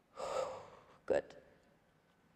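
A woman's heavy breath out from the effort of a slow core compression roll, lasting under a second and fading away.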